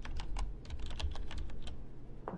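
Typing on a computer keyboard: quick, irregular key clicks, about ten a second, over a low steady hum.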